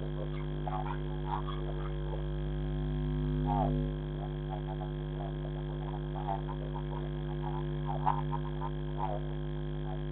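Steady low electrical hum with several overtones from a security camera's microphone, swelling slightly a few seconds in. Faint, short, wavering sounds come and go over it.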